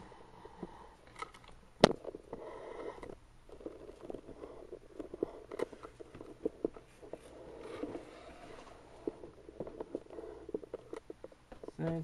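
Cardboard box and packaging being handled: scattered light taps, scrapes and rustles, with one sharp knock about two seconds in.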